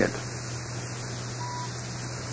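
Steady low hum and hiss of the recording's background noise between narrated sentences, with one short, thin beep about one and a half seconds in.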